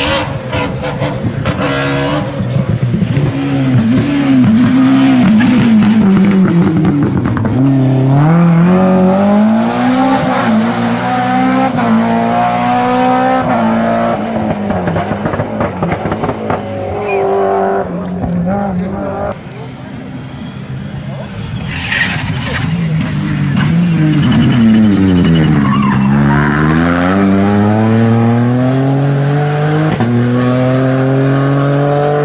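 Rally car engines at competition speed on a tarmac stage, the revs rising and falling over and over through gear changes and braking. The sound dips briefly about two-thirds through; then the next car comes in, its revs dropping sharply under braking and climbing hard as it accelerates towards the end.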